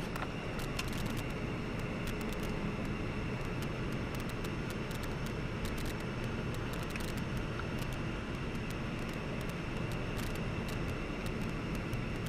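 Steady road and engine noise of a car driving in traffic, heard from inside its cabin, with many short clicks over it.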